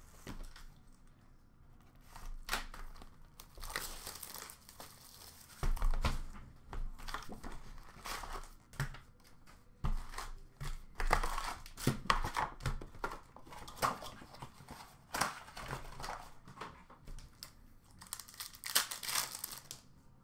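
A cardboard hobby box of Upper Deck hockey cards being torn open by hand, with the wrapped packs crinkling as they are pulled out and stacked, in irregular bursts of tearing and rustling with a few soft thumps.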